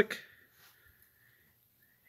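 A man's voice says the word "click" at the very start, then near quiet with only a faint, thin high tone; no separate mechanical click stands out.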